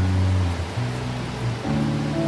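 Live worship band playing soft, sustained chords without singing, the low bass note changing twice.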